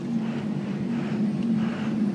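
Cummins 5.9 L inline-six turbo diesel in a 2001 truck running steadily, heard from inside the cab as a low, even drone.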